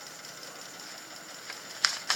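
Steady background hiss of room tone, with one sharp click shortly before the end.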